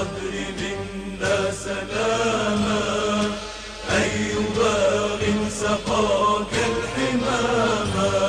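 A man chanting slow, wavering melodic phrases in the manner of a religious chant or elegy, with a steady low drone beneath.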